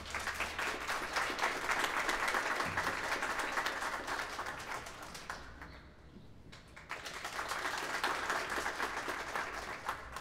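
A small audience clapping, in two rounds: the first dies away about six seconds in, and a second round starts a moment later and tapers off near the end. It is the applause that greets a performer coming to the piano.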